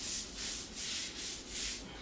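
Damp sponge rubbing back and forth over joint compound on a drywall ceiling, wet sanding the seam smooth: a run of hissing strokes about two a second that stops near the end.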